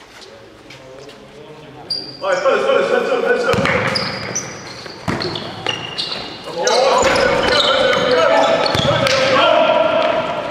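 Basketball game play on an indoor court in an echoing sports hall. A ball bounces, and from about two seconds in sneakers squeal repeatedly on the floor as players run, mixed with players' calls.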